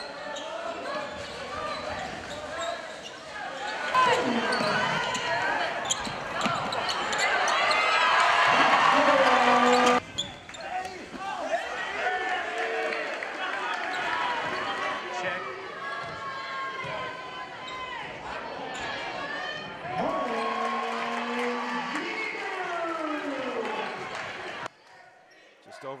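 Basketball game sound in a gymnasium: crowd voices and shouts over a basketball bouncing on the hardwood. The sound changes abruptly several times, is loudest a little before the middle, and drops away sharply near the end.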